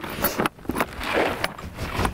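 Horse feed poured from a plastic bucket into a rubber feed pan: a rustling spill of grain with a few short knocks.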